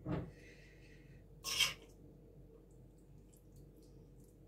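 A metal spoon spreading shrimp filling over a pastry round: faint handling sounds, with a brief low sound at the start and a short hiss about a second and a half in.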